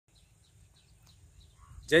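Faint field ambience: a few scattered bird chirps over a low rumble and a thin, steady high hiss. A man's voice cuts in loudly right at the end.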